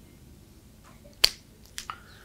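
A single sharp click a little over a second in, then two fainter clicks near the end.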